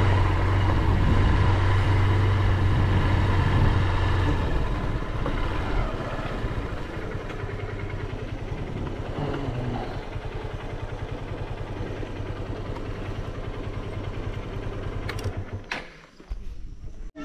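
Motorcycle engine running as the bike rides along, easing off after about four seconds and settling to a steady idle. Near the end it cuts out after a couple of clicks.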